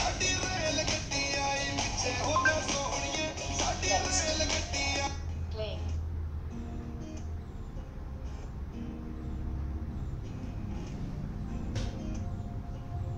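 A song with singing and guitar playing through a small loudspeaker in a cardboard box. About five seconds in it cuts off and a quieter, bell-like track starts: the voice-controlled player skipping to the next song.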